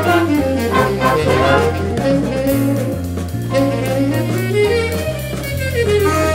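Big band playing a mambo: saxophones and brass over a stepping bass line and drums.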